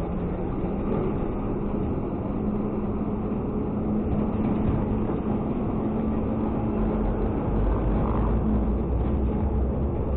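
Automated side-loader garbage truck's diesel engine running as the truck drives off, a steady drone whose pitch climbs slightly a couple of seconds in, with a deeper rumble building near the end.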